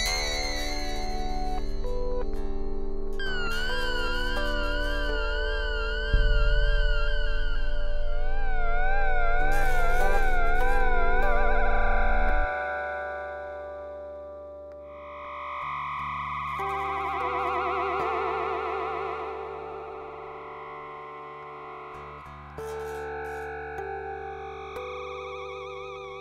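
Live electronic music played on a keyboard synthesizer: sustained notes wavering with a steady vibrato over a deep bass drone. The bass cuts out suddenly about halfway through, leaving softer swelling, warbling chords.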